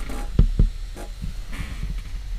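Two dull low thumps about half a second in, then a sharper click about a second in, over a steady low hum.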